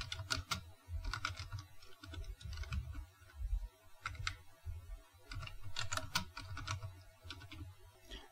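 Computer keyboard being typed on, keystrokes clicking in short irregular runs over a low hum.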